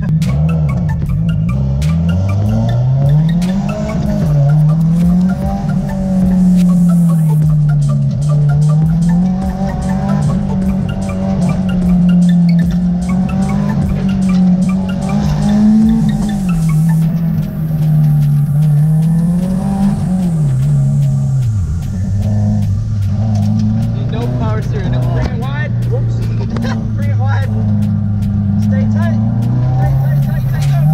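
Subaru Impreza's flat-four engine, heard from inside the cabin, repeatedly rising and falling in revs through an autocross run, with tyres squealing in the turns. About two-thirds of the way through, the revs drop and hold a steady lower note.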